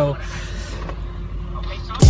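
Steady low rumble inside a stationary car with its engine idling.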